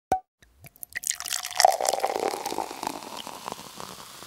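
A short sharp pop and a few drips, then liquid pouring from a bottle and splashing from about a second in, slowly fading: a wine-pouring sound effect.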